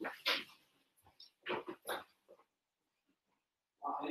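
A few faint, short voice-like calls in a row, with a longer pitched call starting right at the end.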